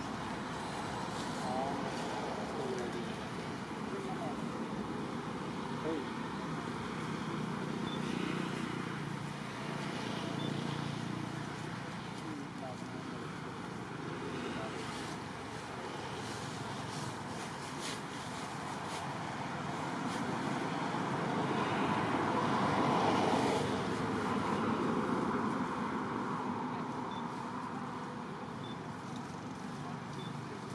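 Outdoor background ambience: a steady wash of distant traffic noise and indistinct far-off voices, growing louder for a few seconds about two-thirds of the way through.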